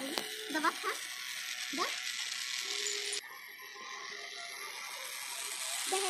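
Small battery-powered DC motor and gears of a homemade matchbox toy car running as it drives over the ground. The sound changes abruptly about three seconds in.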